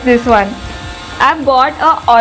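A woman's voice speaking in short bursts, over a steady background hum.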